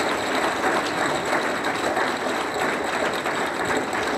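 Audience applauding: a steady, dense clatter of many hands clapping.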